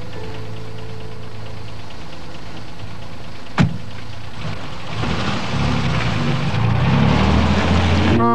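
Car engine idling, a sharp thump about three and a half seconds in, then the engine sound builds and grows louder over the last three seconds.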